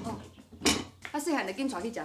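A single sharp clink of kitchen crockery knocked against a counter about two thirds of a second in, then a woman's voice starts.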